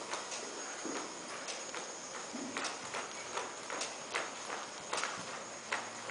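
Hoofbeats of a ridden horse walking on the dirt footing of an indoor arena: an uneven series of sharp clicks, about two a second.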